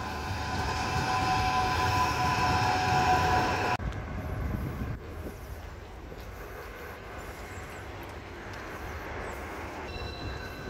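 Electric tram passing close by, its motors giving a steady whine of several tones over the rumble of its wheels, which stops abruptly about four seconds in. A quieter, even street noise follows.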